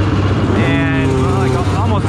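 Honda XR600R's four-stroke single-cylinder engine idling steadily on the motocross starting line.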